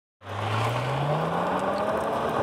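A car engine comes in about a fifth of a second in and accelerates, its note rising steadily.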